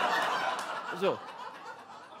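Live audience laughing at a punchline, the laughter fading away over about a second and a half.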